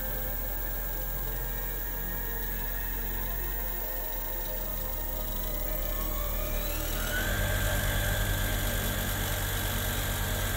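Car alternator converted into a brushless motor, running with a whine that rises in pitch as it is sped up to its top speed of about 2,870 RPM, levelling off about seven seconds in. Background music plays along with it.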